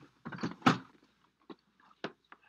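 A car door being unlatched and pushed open: two short noisy clunks in the first second, then a couple of single sharp clicks as someone climbs out.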